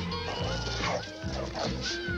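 A dog barking and yapping over background music.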